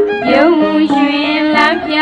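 A Burmese song: a voice singing a line with sliding, ornamented notes over instrumental accompaniment.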